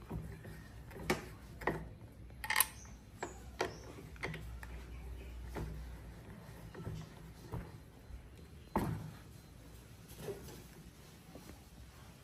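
Hands working a small add-on switch and its wire onto a scooter's handlebar at the mirror mount, giving a handful of irregular small clicks and knocks, the sharpest about two and a half seconds in and near nine seconds.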